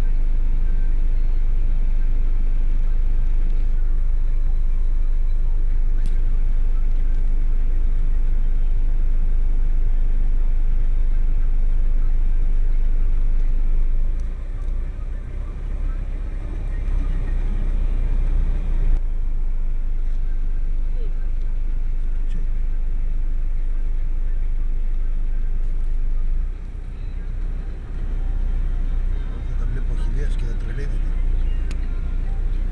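Vehicle engine running with a steady low rumble, heard from inside the cabin. The level dips a little about halfway through and again near the end.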